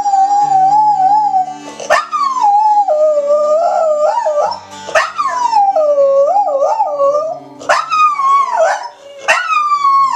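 Border collie howling along to music: a run of long, wavering howls, each fresh one starting high and sliding down, with new ones at about two, five, eight and nine seconds in.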